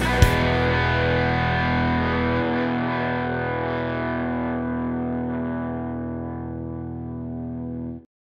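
Electric guitar (a Fender Stratocaster) played with distortion: a final power chord is struck just after the start and left to ring, slowly fading over several seconds before cutting off abruptly at the end.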